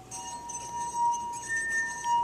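Water-filled drinking glass played by a wet fingertip rubbed around its rim, singing a clear, steady high tone, the note B, with the lower G of the previous glass fading out just as it begins.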